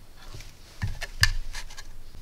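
Handling noise from a 3D-printed plastic case and its wires being picked up and moved: a string of short clicks and scrapes, loudest a little past a second in.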